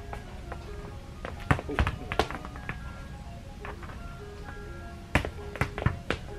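A small ball being kicked and bouncing on a hard floor: sharp taps in two quick clusters of three, about a second and a half in and again near the end, over background music.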